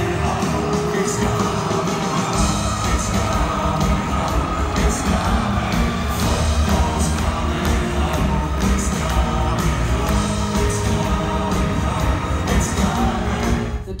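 Live band music with singing, loud and recorded on a phone in a large arena, with the audience yelling and whooping. The bass and drums get heavier about two seconds in.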